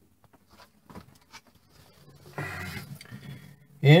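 A few light clicks and knocks as the Dometic RV refrigerator door is opened, the loudest about a second in, followed by soft rustling in the last second and a half.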